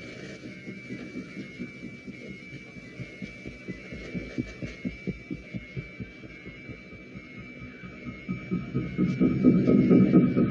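Low, heartbeat-like throbbing pulses in a drama soundtrack, about three a second, swelling louder near the end: a sound effect for a stunned, dazed moment after a disaster.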